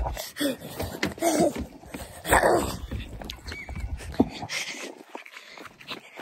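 Rumble and rubbing noise on a handheld phone's microphone as it is swung about in the open air, with a few short whining yelps, the loudest about two and a half seconds in.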